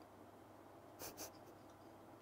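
Near silence: faint room tone, broken about a second in by two short, soft puffs of noise close together.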